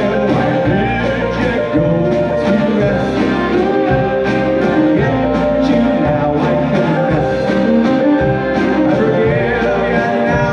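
A live folk-rock band playing together: violin, mandolin, strummed acoustic guitar, electric bass and drum kit, with a man's lead voice singing at the microphone.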